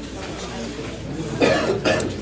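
A person coughing twice in quick succession, about one and a half seconds in.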